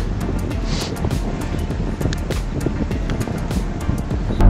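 Wind rushing over the microphone of a bike-mounted camera while riding along a road, a steady rushing noise with scattered ticks, with background music underneath.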